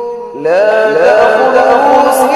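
Male voice reciting Quranic Arabic in melodic tajweed style. A held note fades out, then about half a second in a new phrase begins, sliding up in pitch and then held.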